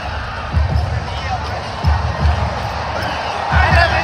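Music over a stadium's PA with heavy, repeated bass thumps, under the steady noise of a large crowd; shouting voices come in near the end.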